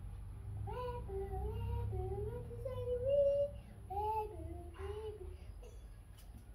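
A young child singing a short melody, with held notes gliding up and down for about five seconds before stopping.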